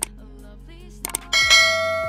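Subscribe-button sound effects: a mouse click, two more quick clicks just after a second in, then a bright bell ding that rings out and fades. Quiet background music runs underneath.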